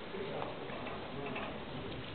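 Background room noise with faint, indistinct voices and a few light clicks.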